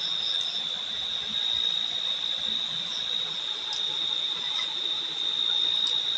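A steady, high-pitched insect trill, like a cricket's, runs unbroken over the soft rubbing of hands kneading dough on a flour-dusted board.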